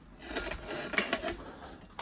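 A few light clicks and scrapes as the metal chassis of a bench power supply is turned on a workbench, the clearest about a second in.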